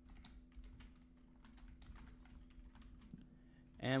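Typing on a computer keyboard: a run of faint, irregular key clicks.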